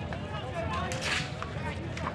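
A short swish about a second in, from a street hockey stick sweeping across the asphalt, with players' voices in the background.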